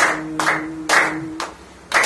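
A group of carol singers clapping hands in time, about two claps a second, under a held sung note. The note and clapping fade for a moment, then a clap near the end brings the group back in.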